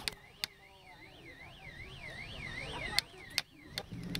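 A hammer knocking on wooden poles, a handful of sharp blows with the loudest about three seconds in. Under the blows, a siren-like warbling tone rises and falls about three times a second and stops about three seconds in.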